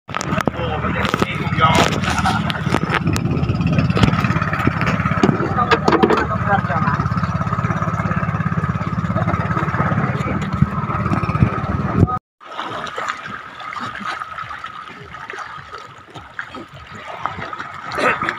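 A small fishing boat's engine running steadily, a low rumble with a thin steady whine, with people talking over it. About twelve seconds in the sound cuts off abruptly and gives way to a quieter, noisy background.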